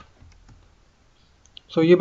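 A few faint clicks of a computer mouse, then a man's voice starts near the end.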